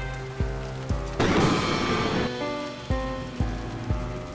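Steady heavy rain, with a louder rush of noise lasting about a second a little after the start. A music score plays under it, with held notes and soft low thumps.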